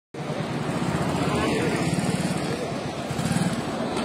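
Steady engine noise from motorcycles and road traffic, with a low hum throughout.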